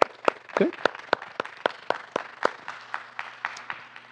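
Scattered applause from a small congregation, the separate claps clearly distinct, thinning out and fading toward the end.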